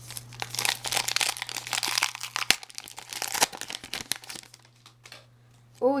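Topps Heritage baseball card pack wrapper crinkling and crackling as it is torn and handled by hand, with one sharper snap partway through. It stops about four and a half seconds in.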